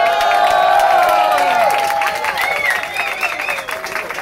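A crowd cheering and whooping with applause as the keyboard music ends. The cheering is loudest in the first two seconds, then thins to steady clapping and scattered shouts.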